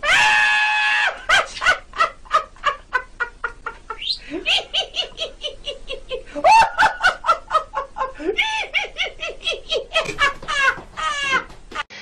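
Rapid hen-like clucking, about four to five short clucks a second, broken by longer drawn-out cackles: one held near the start and loud rising ones around the middle.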